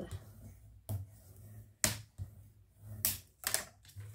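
A few sharp clicks and taps, about four, as a bone folder and a strip of kraft cardstock are worked against a cutting mat while scoring the card.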